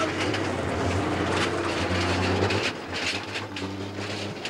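Pickup trucks driving on a dirt track: a steady engine drone with frequent rattling knocks, easing a little about two-thirds of the way through.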